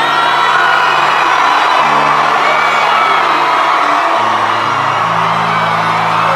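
Live concert music with long, low bass notes that change every second or two, under a loud crowd cheering and screaming.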